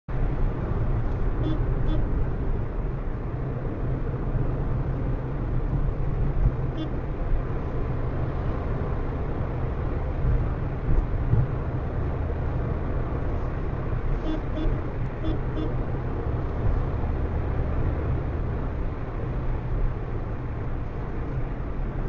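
Steady road and engine rumble inside a moving car cruising on a highway, picked up by a dashcam's microphone.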